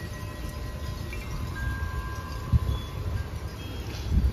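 Tubular wind chimes hanging in a tree ringing with a soothing sound: a few long tones that hold and overlap over a low background rumble. A brief low thump comes about two and a half seconds in.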